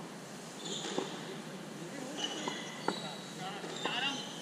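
Players' voices calling out across an open-air cricket court, with a few sharp knocks of the ball in play. The loudest knock comes nearly three seconds in.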